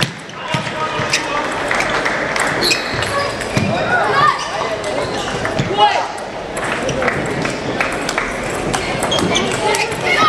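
Table tennis rally: the ball clicks sharply off bats and table again and again, over the steady chatter of voices in a busy sports hall.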